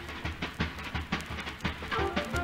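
Music led by a drum kit playing quick, even strokes, about five a second, over a low steady bass.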